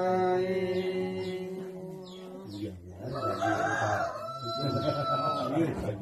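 A man's ritual chant held on one long note, fading out about two and a half seconds in. Then a rooster crows: a rising, raspy call that settles on one high held note for about two seconds.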